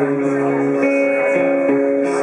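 Acoustic guitar being strummed in a slow live song, its chords ringing and changing a few times.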